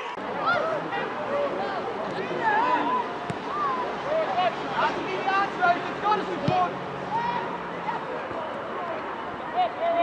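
Distant, overlapping shouts and calls from footballers and spectators across an open-air pitch, many short calls with no single clear speaker, and a sharp knock past the middle.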